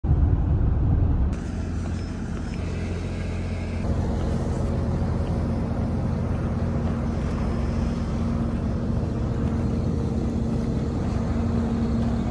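Steady low rumble of road and vehicle noise, with two abrupt changes about one and four seconds in, where the shots cut. A faint steady hum runs under the later part.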